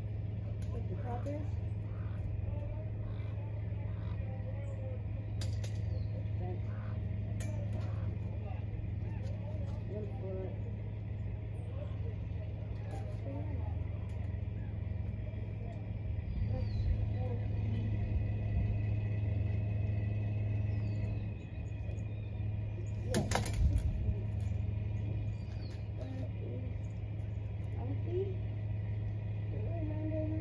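An engine idling steadily with a low, even hum, with one sharp knock about two-thirds of the way through.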